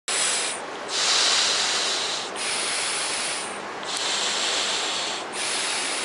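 Rough, hissing rubbing noise on an action camera's microphone, in long surges broken by short dips about every one and a half seconds.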